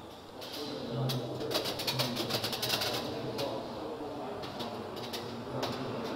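Murmured voices in a room, with a quick run of rapid clicks about a second and a half in and a few single clicks later.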